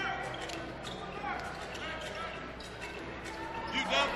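A basketball being dribbled on a hardwood court, with repeated light bounces and a few short sneaker squeaks, over faint arena voices.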